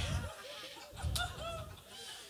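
Audience laughing: many short, overlapping chuckles and cackles from the crowd, with a couple of low thuds.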